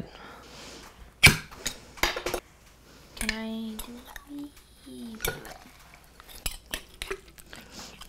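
Metal spoon clinking and scraping against a glass canning jar and a ceramic bowl as home-canned elk meat is scooped out, a scattering of sharp clinks and knocks.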